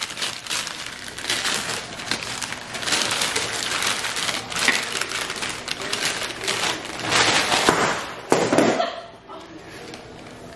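Paper wrapping crinkling and rustling as it is pulled off a glass jar candle by hand. The crackle is continuous and dies down about nine seconds in.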